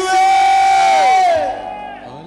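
A man's loud, drawn-out shout through the church microphone and PA, held at one high pitch for over a second, then sliding down and fading out.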